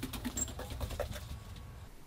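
Footsteps going up a staircase: a few soft, irregular knocks and taps that fade near the end.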